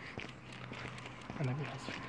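Quiet outdoor background with light footsteps on paving stones, and a short hummed voice sound about a second and a half in.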